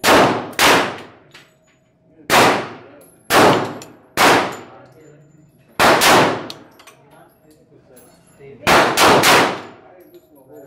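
Handgun shots in an indoor shooting range: about ten sharp reports, some in quick pairs and a fast run of three near the end, each ringing out in the range's echo.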